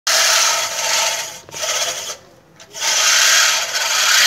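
Manual push reel lawn mower cutting grass: its spinning reel blades whir and rasp through the grass in two pushes, with a short pause about two seconds in.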